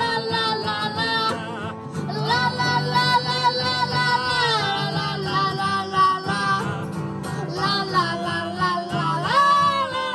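A boy singing a country song with long held notes, accompanied by two acoustic guitars strumming chords.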